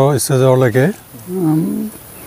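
A man's voice speaking for about a second, followed by a shorter, quieter voiced sound at a steady pitch in the second half.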